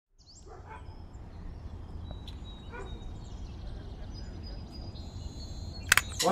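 Low, steady ambient rumble with faint scattered high tones and a few brief faint calls, an outdoor-sounding backdrop with no music. A sharp click comes just before the end, and a voice starts right after it.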